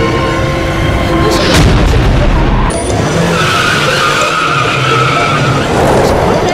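Film soundtrack: a car's tyres skidding and screeching for about two seconds midway, after a sharp low boom about a second and a half in, with the horror score underneath.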